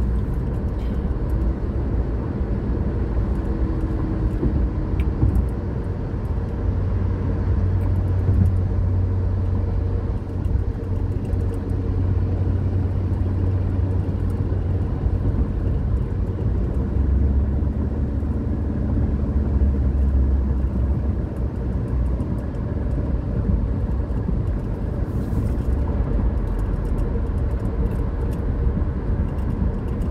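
Steady low road and engine rumble of a car cruising on a highway, heard from inside its cabin.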